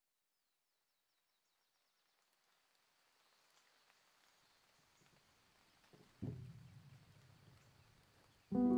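Near silence: faint room hiss that fades in after about two seconds, with one soft thump about six seconds in.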